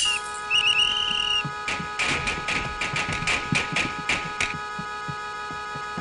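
A whistle blown in two short trilled blasts, then a quick run of sharp knocks for about three seconds, over a steady hum of several held tones.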